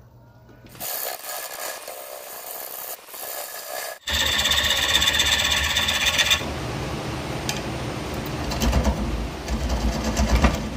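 Wood lathe spinning a wet red oak bowl blank while a gouge cuts into its face, a steady rough cutting and scraping noise. The sound breaks off and starts louder about four seconds in, with a held tone for a couple of seconds, then turns rougher and more rumbling.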